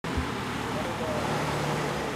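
Suzuki Jimny JA11's small three-cylinder turbo engine running steadily at low revs as the truck crawls over a rocky dirt mound, with voices in the background.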